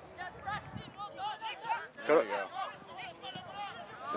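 Faint voices of players and spectators calling out across a soccer field, with one louder shout of "go" about halfway through.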